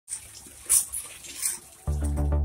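Water running from an open tap and splashing onto concrete, with two short, louder sounds about three-quarters of a second apart. Music with a steady beat starts near the end.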